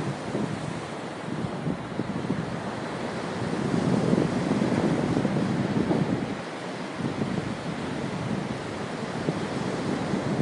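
Ocean surf washing onto a rocky shore, mixed with wind buffeting the microphone. The rushing noise swells about four seconds in and eases a couple of seconds later.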